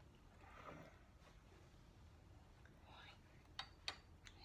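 Near silence: kitchen room tone with faint whispered speech, and two short clicks near the end.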